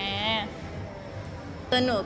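A woman's voice drawing out a short, wavering, whiny 'ngae', a mock cry, followed by a pause before speech resumes near the end.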